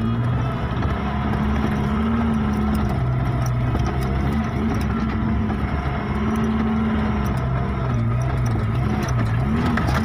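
Pickup truck engine running under load on a rough dirt track, its pitch rising and falling as the driver works the throttle, with quicker rises and dips near the end. Light rattles and knocks from the vehicle over the bumps.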